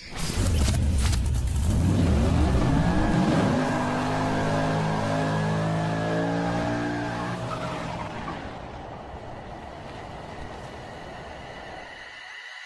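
Car burnout: the engine revs up and is held at high revs while the rear tyres spin and squeal, then the sound fades away.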